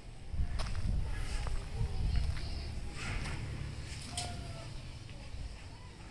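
Footsteps on grass and dirt as someone walks with the camera, over a low rumble on the microphone that is louder in the first half and fades toward the end.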